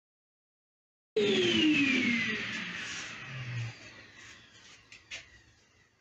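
A 12-inch combination planer/jointer with a helical cutter head winding down after being switched off: the machine's whine falls steadily in pitch and fades over about three seconds. It cuts in suddenly about a second in, and there is a light click near the end.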